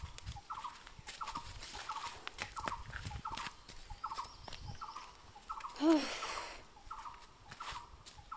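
A short animal call repeating steadily about twice a second, with scattered crunches of footsteps on dry leaf litter and a brief vocal sound about six seconds in.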